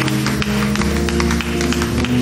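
Live church praise music: sustained keyboard and bass chords with steady hand-clapping over them.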